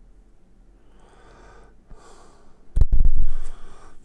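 A man breathing faintly, then about three seconds in a loud burst of breath hitting the microphone with a deep rumble.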